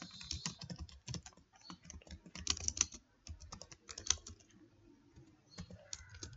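Typing on a computer keyboard, a quick run of keystrokes that thins out to a few taps near the end.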